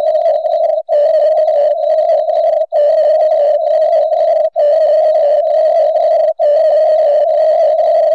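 A loud, steady single-pitched tone with faint higher overtones, cut by brief gaps about every two seconds. It is typical of a fault tone in a live stream's audio feed and not of the game.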